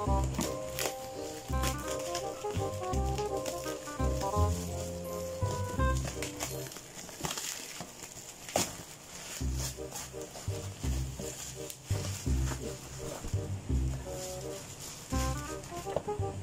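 Background music with a steady beat; the beat drops out for a few seconds midway. Under it, plastic packaging and tape crinkle as a parcel is cut open with scissors.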